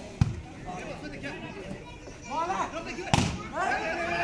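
Two sharp slaps of a volleyball being struck by hand during a rally, one just after the start and the other about three seconds later, with players' and spectators' voices calling between the hits.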